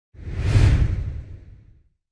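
Whoosh sound effect of an animated logo reveal: a single swell with a deep low rumble under it that peaks about half a second in and fades out over the next second and a half.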